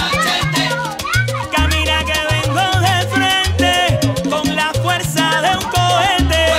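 Upbeat salsa music with a bass line of low notes and steady percussion under a melody.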